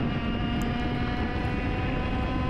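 IAME X30 two-stroke kart engine running at a steady pitch at speed, heard from the kart's onboard camera over a rushing haze of wind and track noise.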